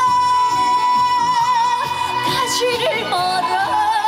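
A female trot singer singing live into a microphone over a rhythmic accompaniment. She holds one long note with vibrato for nearly three seconds, then breaks into a quick ornamented run before settling on the next note.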